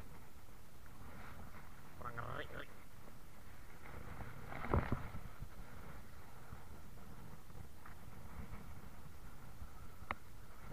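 Steady low wind and sea noise on open water, with a faint voice about two seconds in and a short louder sound near the middle.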